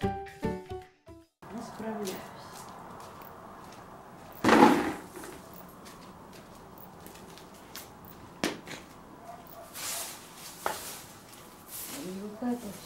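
Music that cuts off about a second and a half in, then a broom scraping and brushing on a concrete yard, with one loud stroke about four and a half seconds in and a few short knocks near the end.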